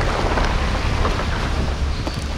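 Car driving through floodwater on the road: tyres throwing up spray against the side of the car, over a low engine rumble, with wind buffeting the microphone at the open window.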